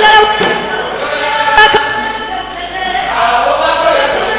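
A group of voices singing together, choir-style, holding several pitches at once, with a single thump about one and a half seconds in.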